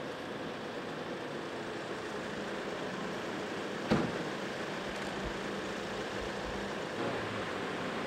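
Steady outdoor street noise with traffic, broken by a single sharp knock about four seconds in.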